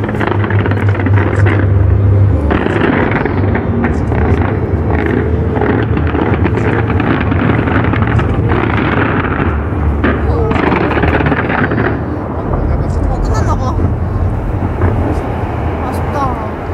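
Fireworks going off continuously at close range: dense crackling and popping over a low rumble of bangs, with a crowd's voices mixed in.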